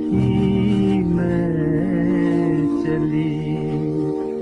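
A man's voice sings a slow, mournful Hindi film song in long held notes over orchestral accompaniment, moving to a new note about a second in and again near the three-second mark.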